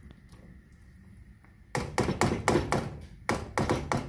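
A spatula stirring a pan of thick stew, knocking and scraping against the pan. The sound comes in two quick runs of taps, starting about halfway through.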